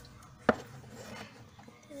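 A single sharp knock about half a second in, as the cardboard chips tube is handled on the table, amid faint handling sounds.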